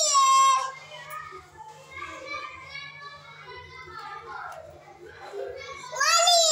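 A young child's voice: a loud high-pitched call right at the start, then soft babbling and chatter.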